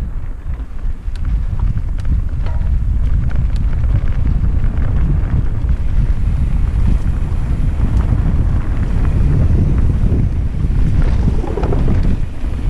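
Wind buffeting the microphone of a camera riding along on a downhill mountain bike, a steady low rumble with a few sharp clicks or rattles in the first few seconds.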